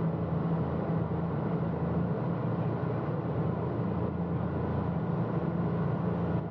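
Motorboat engine running at a steady drone under a constant rush of wind and water.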